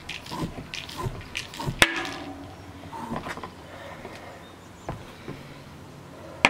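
Floor pump being worked to inflate a tubeless mountain-bike tire whose bead has not yet seated, air hissing through the hose in short strokes over the first two seconds, with a sharp click near two seconds in.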